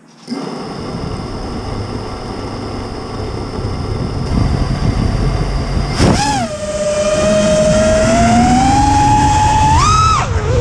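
Four brushless motors of a 5-inch FPV racing quad (T-Motor 2306.5 2000 kV) spin up after arming and idle on the ground. About six seconds in the throttle is punched for takeoff: the motor whine jumps, settles, then climbs steadily in pitch before jumping again at the end. Heavy prop-wash rumble is on the onboard camera's microphone throughout.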